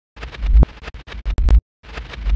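Glitch-style logo intro sound effect: stuttering, scratchy static over a deep bass swell, chopped off suddenly several times, with a few sharp clicks and a short silence near the end.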